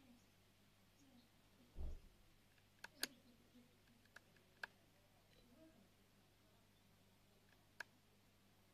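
Near silence, broken by one dull low thump about two seconds in and about five short, sharp clicks spread over the rest.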